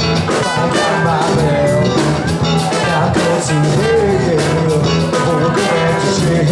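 Live rock band playing: electric guitars and bass over a drum kit, with cymbal strikes keeping a regular beat and a lead line that bends and wavers in pitch around the middle.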